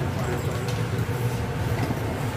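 Steady low machinery hum of a jet bridge docked at an airliner's door, with indistinct voices of boarding passengers behind it.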